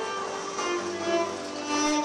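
Cello bowed in a few held notes that change in pitch, played by a street musician.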